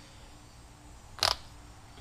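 A single sharp mechanical click about a second in, from a click-type torque wrench as its setting is being adjusted. Otherwise faint room hum.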